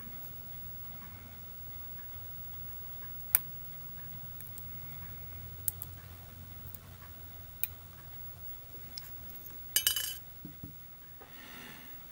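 A reground No. 18 chisel blade in a hobby knife pressing through the tabs of a brass photo-etch fret: a few sharp single clicks, seconds apart, the loudest about three seconds in. Near the end comes a short clatter of metal clinks.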